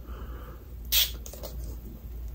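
A single short spray from a fragrance body-mist bottle's pump atomiser, a brief hiss about a second in, over a faint steady low room hum.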